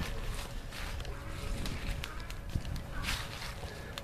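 A noon siren holding a steady tone, with a donkey braying.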